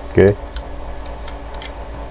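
A few light, sharp clicks from small tools and parts being handled at the repair bench, over a steady low hum.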